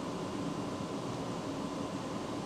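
Steady room tone: an even background hiss with nothing else standing out.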